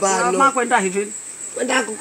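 Steady high-pitched insect trill in the background, with a man speaking in short repeated phrases over it; the trill stands out most in the pause a second in.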